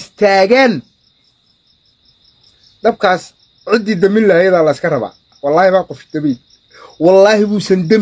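A man speaking in short, animated bursts with pauses between them, over a faint steady high-pitched pulsing trill in the background, several pulses a second, like an insect chirping.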